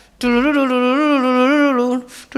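A man's voice singing a tune close to the microphone: one long held note that wavers gently in pitch, starting about a quarter second in.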